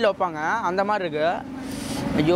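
A man speaking, with a steady low hum underneath.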